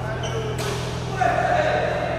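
A badminton racket strikes a shuttlecock with one sharp crack about half a second in, then a voice calls out loudly, over a steady low hum and the chatter of a large hall.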